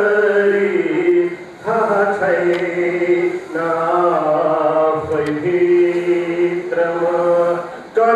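A man's voice reciting Nepali poetry in a sung, chant-like style, holding long, level notes in phrases broken by brief breaths every two seconds or so.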